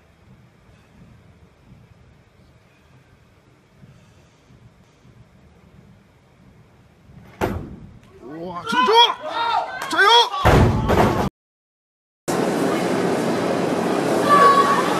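A sharp thud about halfway in as the 220 kg barbell's jerk is caught, then a few seconds of shouting voices and a loud heavy crash of the loaded bumper-plate barbell dropped onto the lifting platform. After a second of silence comes a steady arena crowd noise.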